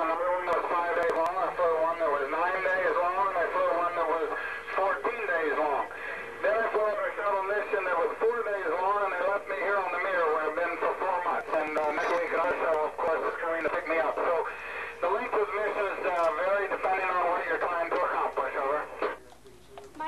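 Speech coming over a ham radio link through the station's loudspeaker: a voice thin and narrow in range, talking steadily and stopping about a second before the end.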